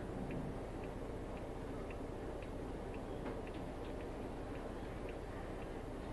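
Faint, regular ticking, about two ticks a second, over a steady low room hum.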